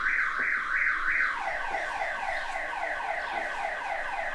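An electronic alarm sounding in fast, repeating pitch sweeps. About a second and a half in, it switches to a quicker pattern of lower falling sweeps.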